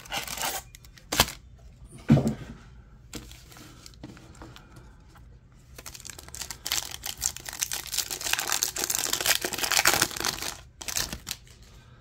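Cardboard blaster box being handled, with a few sharp knocks in the first couple of seconds. Then a foil trading-card pack is torn open and crinkled for about five seconds, stopping just before the end.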